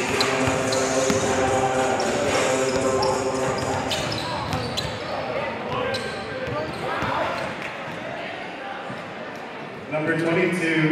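Basketballs bouncing on a hardwood gym floor during warmups, amid voices echoing in the gym. The sound grows quieter over the last few seconds.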